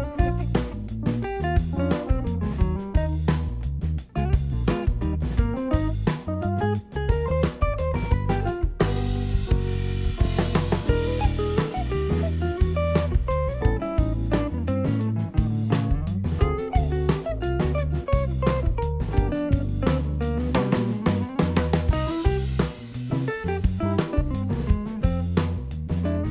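Background music with guitar and a steady drum beat, with a short break in the beat about nine seconds in.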